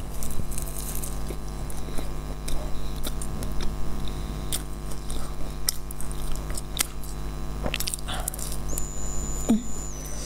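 Close-up chewing and biting of a baked sesame flatbread, a string of irregular soft crunching clicks, over a steady electrical hum.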